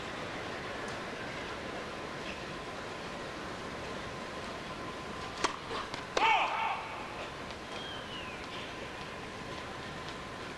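A tennis ball struck on a serve about halfway through, then a second sharp hit under a second later, followed at once by a short shouted call, over the steady hum of an indoor arena crowd hushed for the point.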